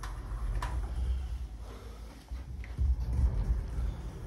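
A built-in wardrobe's sliding door rolling on its track, a low rumble in two stretches with a sharp click about half a second in.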